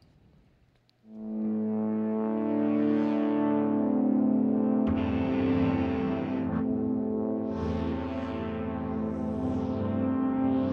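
Native Instruments Low End Modular software synthesizer playing held chords, swelling in after about a second of near silence, with a new, deeper chord coming in about halfway through.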